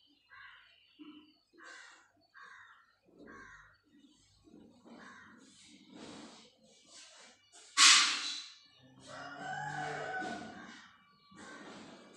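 Bird calls in the background: a run of short calls, a sharp loud one about eight seconds in, then a longer drawn-out pitched call.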